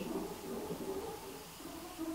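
Window shutters being closed, heard as a faint, steady mechanical noise.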